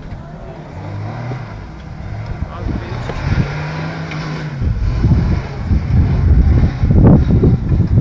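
Modified Jeep CJ5's six-cylinder engine under load off-road, a steady drone about midway through. From about five seconds in, loud wind buffeting on the microphone builds and largely covers it.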